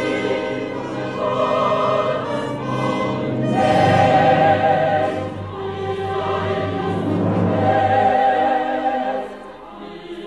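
Choir singing with symphony orchestra, swelling louder about four seconds in and again near eight seconds, then falling away just before the end.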